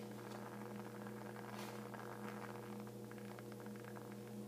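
Steady low hum of a running ceiling fan's motor, with a few faint clicks and a brief hiss about a second and a half in.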